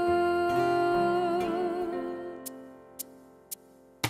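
A small live acoustic band, acoustic guitar with bowed strings holding notes with vibrato, lets a final chord ring and fade away. In the quiet that follows come three sharp ticks about half a second apart, a percussionist's count-in to the next part of the song.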